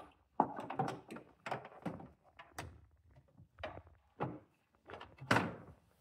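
A Bosch router on its metal mounting plate being lowered into a router table opening: a series of irregular knocks, clunks and scrapes as the plate is fitted and seated, the loudest knock about five seconds in.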